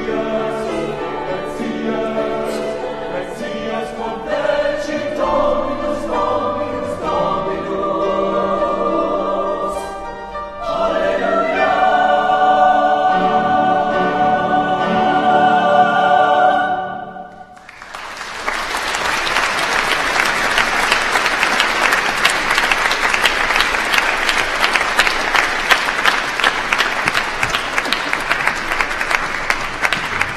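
A choir singing a slow piece that ends about seventeen seconds in. After a brief pause the audience breaks into steady applause.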